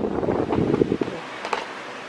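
Loud low rumbling noise on the microphone that drops about a second in to a quieter steady hiss, with one sharp click shortly after.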